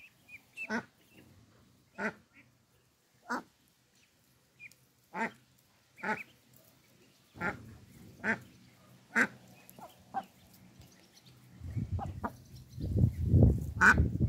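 Indian Runner duck hen giving short, single quacks about once a second or so, with faint high peeps from her ducklings now and then. A low rumbling noise comes in near the end.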